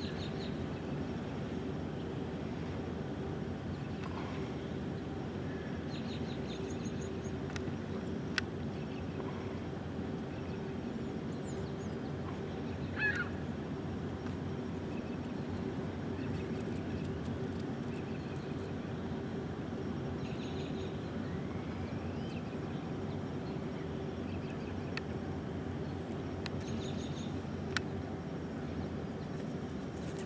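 A steady low hum with faint bird calls now and then: a short high chirping phrase recurs several times, and a louder rising call comes about halfway through. Two sharp clicks stand out, one early and one near the end.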